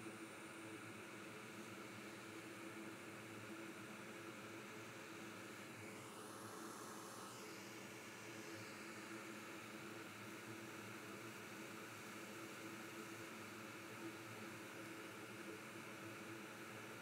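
Faint, steady hiss with a low hum from a hot air rework station blowing from a distance, preheating the board before the BGA chip's solder balls are melted. The hiss swells slightly about six seconds in.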